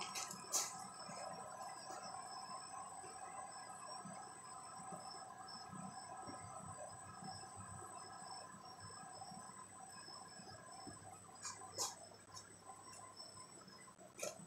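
Faint steady chorus of night insects: several steady high tones with a pulsing trill higher up. A few sharp clicks sound near the end.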